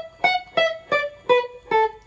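Kanji Stratocaster electric guitar through a Fender Hot Rod Deluxe amp, playing about five single picked notes of the minor pentatonic scale, one at a time and stepping mostly downward, each left to ring briefly.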